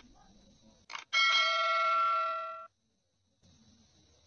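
Subscribe-button sound effect: a short click about a second in, then a bell chime of several ringing tones lasting about a second and a half that stops abruptly.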